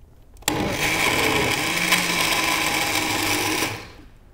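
Countertop blender running for about three seconds, switched on suddenly about half a second in and stopping near the end, its motor and blades working through a thick mixture of oranges, soaked bread and garlic.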